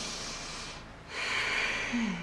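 A woman breathing deeply: a long breath, a short pause about a second in, then a second long breath, which fits a breath in followed by a breath out.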